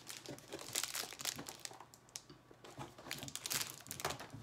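Clear plastic candy packet crinkling as it is handled, with irregular crackles that are densest about a second in and again after about three seconds.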